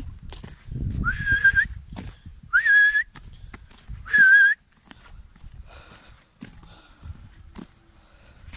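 A person whistling three times, each a short, high whistle that slides up and then holds, spaced about a second and a half apart: a farmer's calls while driving sheep.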